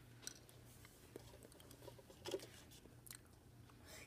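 Faint chewing of jelly beans, with a few soft clicks of the mouth and one slightly louder moment a little past the middle.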